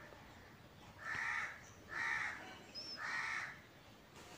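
A crow cawing three times, about a second apart, each caw about half a second long.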